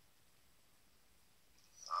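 Near silence: faint room tone, with a soft, quiet voice starting just before the end.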